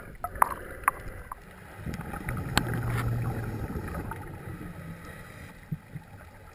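Underwater sound heard through a camera housing: a few sharp clicks in the first second and a half, then a low rumble of a scuba diver's exhaled regulator bubbles for about two seconds, fading out after about four seconds in.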